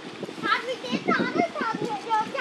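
Children's voices chattering in short, high-pitched phrases.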